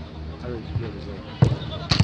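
Two sharp thuds of a football being struck, about half a second apart near the end, with players calling out on the pitch before them.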